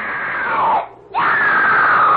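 Two long, loud screams, each sliding down in pitch, with a short break about a second in before the second one begins.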